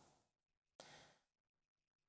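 Near silence in a pause of a man's talk, with one faint, short breath just under a second in.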